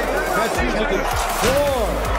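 A voice with gliding pitch over background music, from boxing highlight audio playing.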